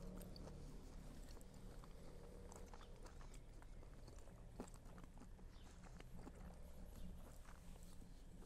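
Faint chewing of a bite of grilled ribeye steak, with small irregular mouth clicks and smacks.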